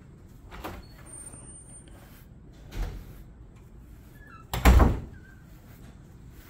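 Entrance doors opening and swinging shut, heard as a few knocks and thumps, the loudest a heavy thud a little before five seconds in.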